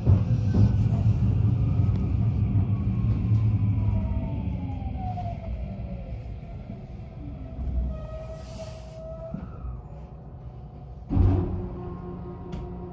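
Train slowing to a stop at a station platform: its running rumble fades while its motor whine glides down in pitch, then a short loud burst of noise comes just before it halts.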